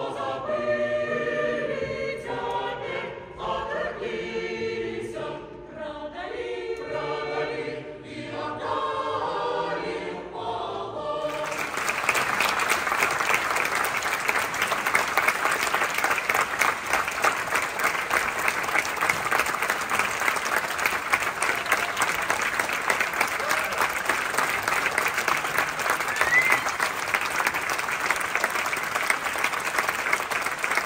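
A Belarusian choir singing together in harmony. About eleven seconds in, the singing gives way abruptly to loud, sustained applause from a large audience that carries on to the end.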